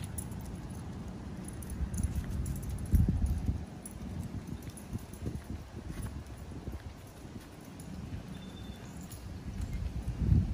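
Footsteps on asphalt and low rumbling from the handheld microphone as it follows the dog. There is a heavier thump about three seconds in, and faint light jingling.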